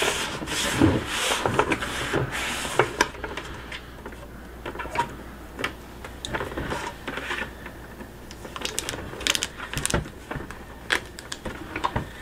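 Hands rubbing tape and vinyl transfer tape flat against the side of a plastic bucket, a scratchy swishing in the first few seconds. It is followed by softer handling of the bucket and tape, with scattered light clicks and crinkles.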